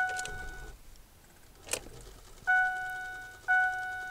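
Ford F-550 Super Duty dashboard warning chime with the key on: a single-pitched ding that fades away, once at the start, then repeating about once a second in the second half. A single short click falls in the quiet gap.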